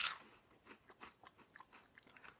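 Faint crunching of caramel-coated corn puffs being chewed, a scatter of small crackles, after a short breathy hiss at the start.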